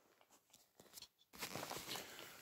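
Handling noise on a handheld phone's microphone: a few faint clicks, then rustling and scraping from a little past halfway as the phone is moved.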